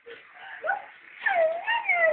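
Domestic cat meowing: a short call about half a second in, then longer meows with wavering, rising and falling pitch in the second half.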